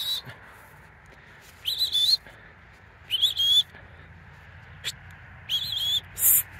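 A handler's whistle giving sheepdog commands: three short whistle notes, each about half a second with a slight waver in pitch, spread a second or so apart.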